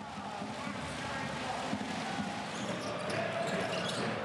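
Game sound from a basketball arena: a ball bouncing on the court over a steady background of crowd voices.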